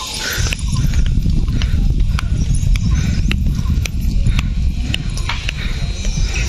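Wind buffeting a handheld camera's microphone in a heavy, uneven rumble, with sharp footstep clicks on a stony mountain path about twice a second.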